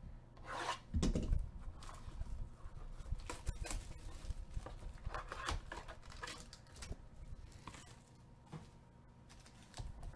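Plastic shrink wrap and cardboard packaging of a trading-card hobby box rustling and tearing as gloved hands open and handle it. The crackles come in irregular bursts, loudest about a second in, and thin out near the end.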